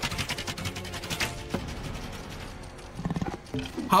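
Action film soundtrack playing quietly: dramatic music with a fast clatter of arrows being loosed by a line of archers.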